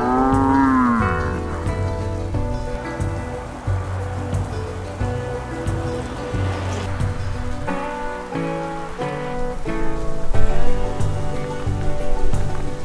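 A man's long, drawn-out groan of frustration that rises and then falls in pitch, lasting about a second and a half at the start. It is followed by background music with a steady beat.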